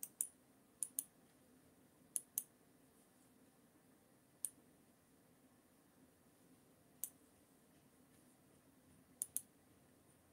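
Computer mouse clicking faintly: about ten short, sharp clicks spread out, several in quick pairs, over a faint steady hum.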